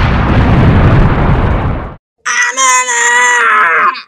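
A loud, rumbling explosion sound effect that cuts off abruptly about two seconds in. After a brief gap, a held, pitched cry-like sound follows and dips in pitch at the end.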